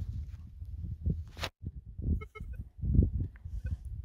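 Uneven rustling and handling noise as fingers work soil off a freshly dug coin, with a sharp click about one and a half seconds in and a brief faint pulsed tone just after the middle.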